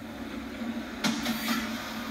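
Steady machinery hum and rumble from a live TV feed, heard through a television's speaker, with a brief whoosh about a second in as the broadcast cuts to the live shot.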